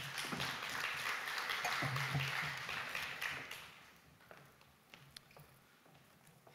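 Audience applauding for about four seconds, then dying away, followed by a few faint taps.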